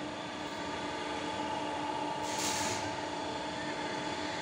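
Belt conveyor's electric drive running with a steady mechanical hum. A brief hiss comes about two and a half seconds in.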